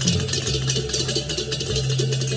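Traditional percussion music accompanying dancers: fast, dense metallic strikes over a steady low tone.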